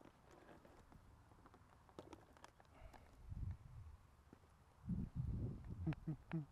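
Dull thumps and light knocks from a model jet's foam airframe being handled and carried, picked up by a camera mounted on the plane; the loudest thumps come in a cluster near the end.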